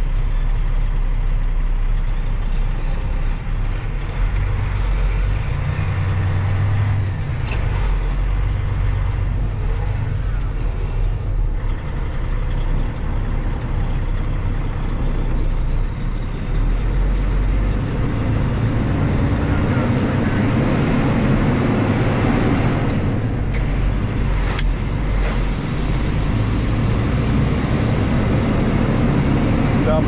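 Kenworth T800 dump truck's diesel engine running steadily as it pulls a loaded side-dump trailer through slow city traffic, the drone swelling now and then. About 25 seconds in a steady hiss of air starts and runs on, as the trailer's lift axle is let down.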